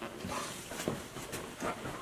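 A dog close by, making a few faint, short breathy sounds.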